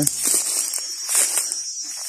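Footsteps crunching and crackling through dry leaf litter and twigs, over a steady high-pitched hum of insects.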